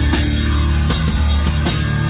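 Live rock band playing loud: drum kit, electric guitar and bass guitar, with a sustained low bass line and three heavy drum and cymbal hits under a second apart.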